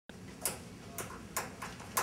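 A handful of sharp taps, about five, irregularly spaced roughly half a second apart, over a low room background.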